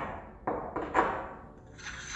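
Hard objects knocking against lab glass and porcelain: three sharp clinks about half a second apart. Near the end a steady gritty scraping starts as a piece of marble is ground with a pestle in a porcelain mortar.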